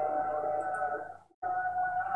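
A steady background hum with several high, steady whining tones. It cuts out to silence for a moment a little past a second in, then comes back unchanged.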